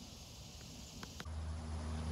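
Faint outdoor background with a few soft ticks, then a little past halfway a steady low drone starts and holds.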